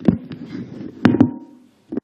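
Knocks and rustling on a close microphone, the loudest knocks at the start and about a second in, a last one near the end: a microphone being handled and adjusted before the next speaker begins.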